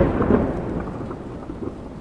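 A low rumbling noise with a rain-like hiss, fading out steadily.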